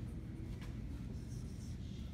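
Dry-erase marker scratching across a whiteboard in a few short strokes, faint over a steady low room hum.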